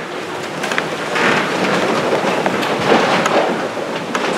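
Rustling and shuffling of a congregation settling into wooden pews, an even noisy haze with many small scattered knocks.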